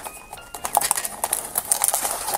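Foil bag crinkling and a cardboard box being handled as the bag is pulled out of a small blind box, in short rustles and clicks that come thicker in the second half.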